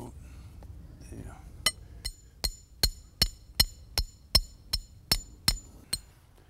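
Hammer driving a stake into the ground: eleven evenly paced strikes, about two and a half a second, starting a second and a half in, each with a bright metallic ring.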